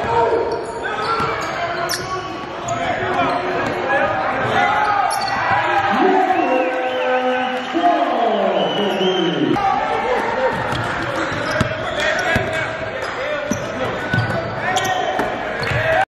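Basketball game sound in a gymnasium: a basketball bouncing on the hardwood court, short squeaks from sneakers, and the voices of players and spectators echoing in the hall.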